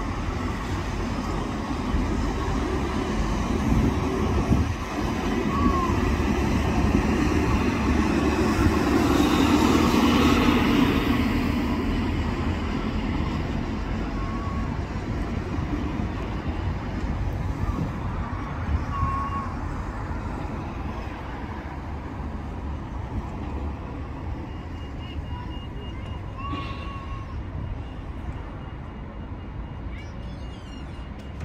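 Outdoor street ambience: a steady rumble of road traffic with wind on the microphone, swelling as a vehicle passes about a third of the way in, then easing off. A few brief chirps sound now and then.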